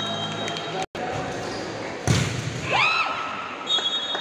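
Futsal being played in an echoing sports hall: the ball being kicked and bouncing on the court, with shouting voices and a few brief high-pitched squeaks. The sound cuts out for an instant just before a second in.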